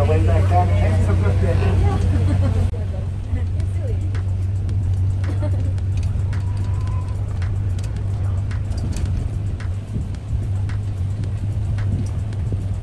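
Inside a moving shuttle bus: a steady low drone of engine and road noise. Voices sit over it for the first few seconds and stop sharply, leaving the drone with faint clicks and rattles.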